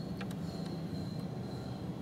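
Steady low background hum with a few faint ticks as a test-light probe touches the terminals of blade fuses in the power distribution box.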